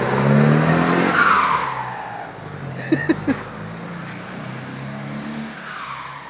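VW 8-140 truck's turbocharged diesel engine revving, its turbo fitted with an intake comb (pente) that makes it whistle loudly. The whistle falls in pitch about a second in as the revs drop, and again near the end.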